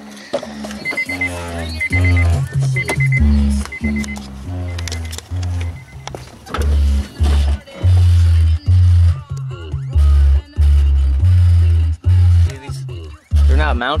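Music with a loud, heavy bass line and vocals playing through a car's new stereo: a Pioneer DEH-15UB head unit driving JVC CS-V6937 speakers.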